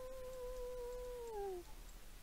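A domestic cat giving one long, drawn-out meow that holds a steady pitch and then drops away at the end.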